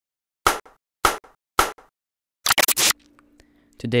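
Three sharp knocks, a little over half a second apart, each followed by a softer second tap, then a quick cluster of knocks about two and a half seconds in. A faint low hum follows before a man's voice begins near the end.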